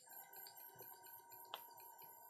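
Faint background music: steady held tones under a quick, repeating bell-like pattern, with a single sharp click about one and a half seconds in.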